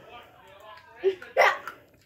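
A girl's voice: faint vocal sounds, then two short, sudden, loud vocal bursts, the louder one about a second and a half in.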